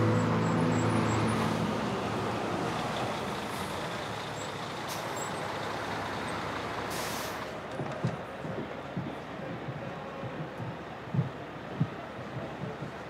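Coach-station ambience: bus engines running under a steady noise of traffic, with a short high hiss of a bus's air brakes about seven seconds in and a few soft thumps near the end.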